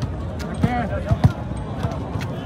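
Volleyball being struck by hand: a sharp slap about half a second in and two more close together just past a second, with players shouting.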